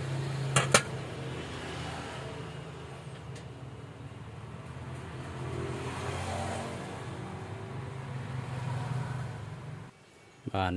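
Two sharp metallic clicks about half a second in as a steel vernier caliper is set down in a stainless steel tray, followed by a steady low mechanical hum that swells around the middle and again near the end.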